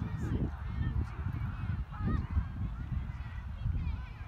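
Wind buffeting the microphone with a steady low rumble, over distant voices of players and spectators calling across an open field.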